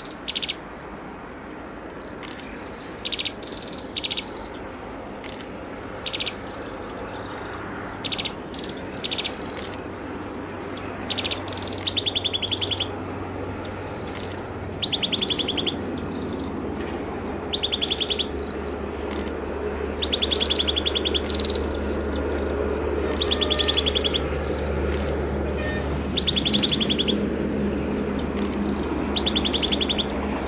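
Common tailorbird calling: short, rapidly pulsed calls repeated every second or two, becoming longer in the second half. A steady low background noise grows louder underneath.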